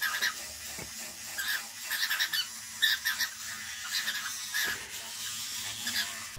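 A bird chirping in short, irregular high calls, several a second.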